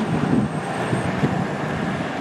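Outdoor road noise from an SUV driving slowly away on the road: a steady, even sound of engine and tyres.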